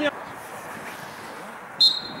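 A referee's whistle blown once near the end, a single short steady high blast, over the open-air background hum of the pitch. It signals the players to take a kick at goal.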